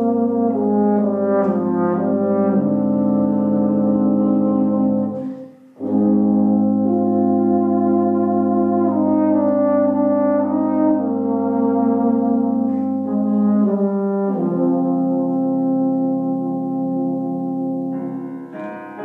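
Two euphoniums and a tuba playing sustained chords together, breaking off briefly for a breath about five seconds in and then resuming. The lowest note drops away near the end.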